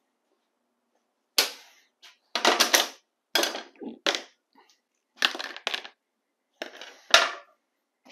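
Short clinks and clatters of hand tools and small metal carburetor parts being handled on a workbench tray, about seven separate knocks with silence between them.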